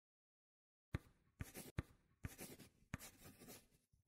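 Pencil sketching on paper: about five quick scratchy strokes beginning about a second in, each starting with a sharp tap.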